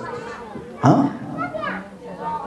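Speech only: a man speaking into a microphone, one short word about a second in after a brief pause.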